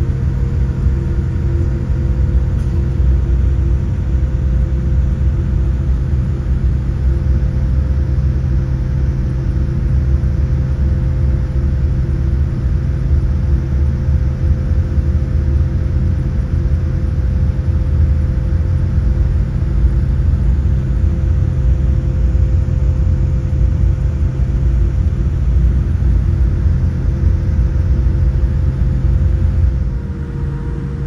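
Steady low rumble and hum inside the cabin of a Boeing 787 airliner taxiing on the ground, its engines at low thrust, with a few constant droning tones over the rumble.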